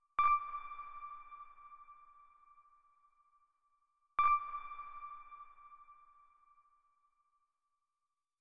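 A bell-like chime struck twice, about four seconds apart; each clear ringing tone fades out over about three seconds.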